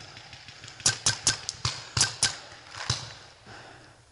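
A paintball marker firing a quick, uneven string of about eight sharp pops, bunched between about one and three seconds in.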